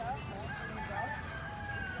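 Rooster crowing, faint: one long crow whose high held note runs for over a second and tails off near the end.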